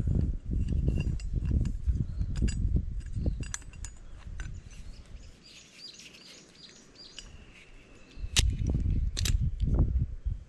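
Steel scaffold pipe and locking pliers handled together: repeated metallic clicks and clinks with rumbling handling noise, quieter for a few seconds in the middle, then two sharp clinks near the end. Faint bird chirps are heard in the quiet middle stretch.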